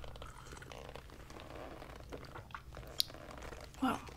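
Quiet sipping and swallowing from a porcelain teacup, with one sharp click about three seconds in as the cup touches the saucer.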